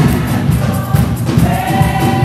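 Gospel choir singing over loud live church music. Held notes come in about one and a half seconds in.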